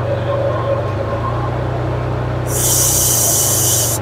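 Car engine idling steadily with the AC running while the refrigerant is charged. About two and a half seconds in, a loud hiss starts and lasts about a second and a half: R134a gas spurting from the loosened charging-hose fitting as the hose is bled of air.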